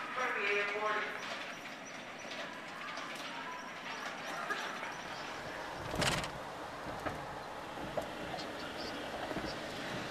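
Indistinct voices in a large echoing hall fade out in the first second. A single heavy thump follows about six seconds in, then the low rumble of a car interior with a few small clicks.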